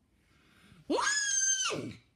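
A person's high-pitched shriek, about a second long: the voice shoots up, holds, then drops away.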